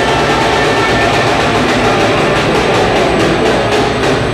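Live rock band playing loud: a dense wash of distorted electric guitars and cymbals, with regular drum hits coming through in the second half.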